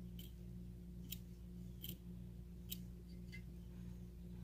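About five faint, short clicks spread over a few seconds as a steel gauge block is handled and set under the stylus of a dial test indicator on a steel plate, over a steady low hum.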